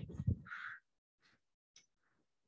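The tail of a man's speech, ending in a short, rasping vocal sound under a second in, then quiet with one faint click near the end.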